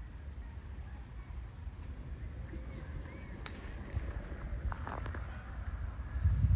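A single faint, sharp click about halfway through: a hybrid club striking a golf ball at a distance, over a low steady rumble.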